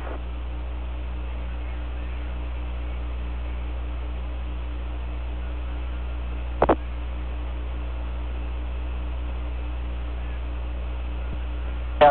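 Open air-to-ground radio channel with no one talking: a steady hum and hiss from the 1969 Apollo 11 lunar downlink, broken once, a little past halfway, by a short sharp crackle.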